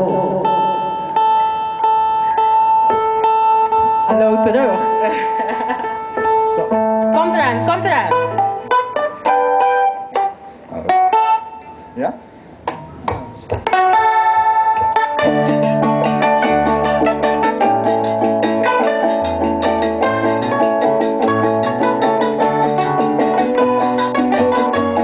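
Stringed instruments being tuned and tried out, with held steady notes and single plucked notes and short pauses between. About fifteen seconds in, the tipiko band starts playing together, with a bass line under the chords.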